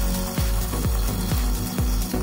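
Moulinex Original electric blade coffee grinder running while its lid is held pressed down, grinding coffee beans: a steady motor hum with a rattling, mechanical edge. A low thump that falls in pitch repeats about twice a second throughout.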